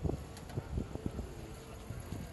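Outdoor ambience of faint, distant voices over wind rumbling on the microphone.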